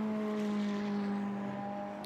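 Racing car engine heard trackside, held at steady high revs as a single even drone whose pitch sinks slightly as the car goes by.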